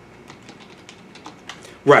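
Light, irregular clicking of keys being typed on a computer keyboard, a quick run of soft keystrokes, cut off near the end by a man's voice.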